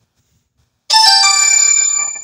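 An electronic ringtone sounds about a second in: a bright cluster of steady, bell-like tones that starts suddenly, steps through a short run of notes and slowly fades. It is one round of a chime that keeps repeating every few seconds.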